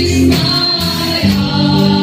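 Live gospel praise-and-worship song: a woman's voice leading through a microphone and PA, with the congregation singing along over band accompaniment and a steady beat about twice a second.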